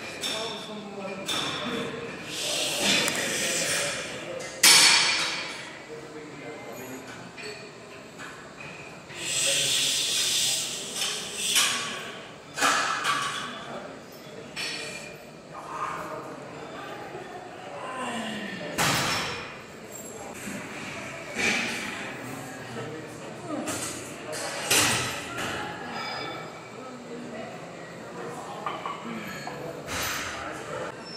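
A man's forceful, hissing exhales and strained breathing through gritted teeth, repeated irregularly across a heavy set of presses on a plate-loaded incline chest press machine. Occasional metallic clinks and thuds come from the machine and its iron weight plates.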